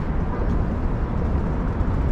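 Steady low rumble of road traffic on the bridge, an even wash with no single vehicle or event standing out.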